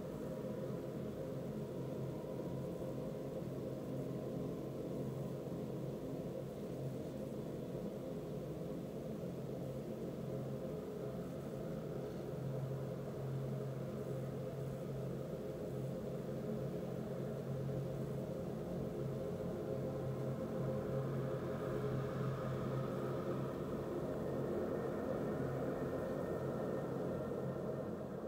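Steady low rumbling drone with a constant hum, swelling slightly in the last several seconds.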